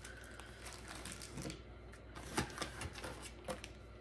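Wax melt packages being handled and set down: a scattered run of faint clicks, taps and light rustles.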